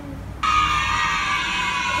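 A bright sound effect or music sting added in editing. It starts suddenly about half a second in, holds many tones at once and slides slowly down in pitch.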